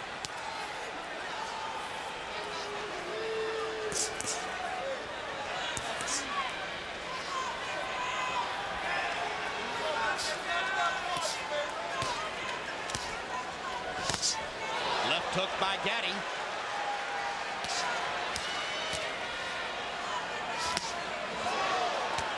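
Boxing arena crowd noise with individual voices calling out, and sharp cracks of gloved punches landing at irregular intervals, a few seconds apart.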